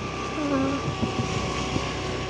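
A moving vehicle's engine running steadily, with a thin steady whine.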